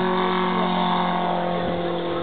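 Petrol engine of a large-scale radio-controlled aerobatic biplane running steadily in flight, a constant droning note that sags slightly in pitch partway through.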